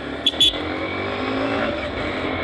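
Motorcycle engine pulling steadily as the bike accelerates, its note rising slowly. Two brief sharp sounds stand out near the start.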